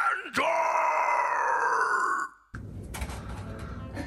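A drawn-out voice held on one note for about two seconds, then cut off abruptly. Quieter room noise with a few light knocks follows.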